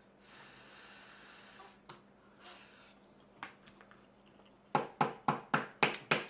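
A person tasting food: two soft, breathy exhales while chewing, then a quick run of about seven short, sharp sounds roughly five a second near the end.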